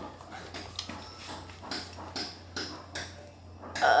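Faint rustling and light knocks of handling as a person bends down to pick up a dropped paper sticky note, with one sharper knock right at the start. A short vocal "uh" comes just before the end.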